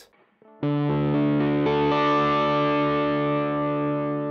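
D'Angelico Premiere DC semi-hollow electric guitar in open E tuning, all six strings at the 10th fret strummed slowly so the strings sound one after another over about a second, then left to ring as a D major chord. The chord starts about half a second in.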